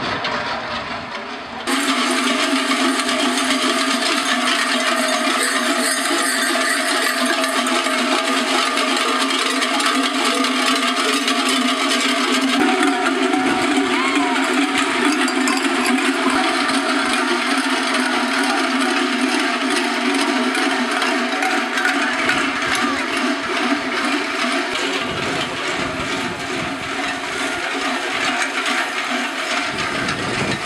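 Many large cowbells (cencerros) worn by masquerade dancers, clanging together in a dense continuous jangle. The sound jumps louder just under two seconds in.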